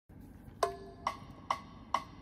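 Four-beat count-in at 137 BPM: four short wood-block-like metronome clicks, evenly spaced, each with a brief ring.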